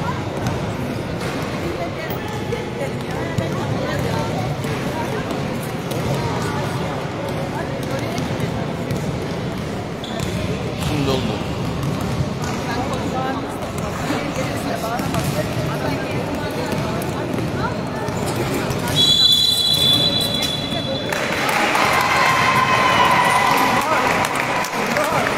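Basketballs bouncing on a gym's hardwood-style court during a team warm-up, with the hall's echo and a background of voices. About 19 seconds in a high steady tone sounds for about two seconds, and the noise of the hall grows louder near the end.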